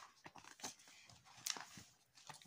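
Pages of a glossy paper catalogue being turned by hand: faint rustles and flicks of paper, the clearest about one and a half seconds in.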